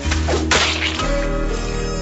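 Cartoon sound effect of a wet paper wad flung up and smacking onto a ceiling tile: one sharp, whip-like smack about half a second in, over background music.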